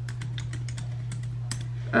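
Laptop keyboard being typed on: quick, irregular key clicks over a steady low hum.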